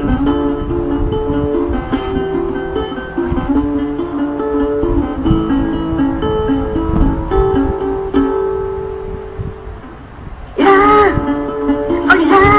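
Acoustic guitar played as a song intro, chords strummed and left ringing. A woman's singing voice comes in near the end, louder than the guitar.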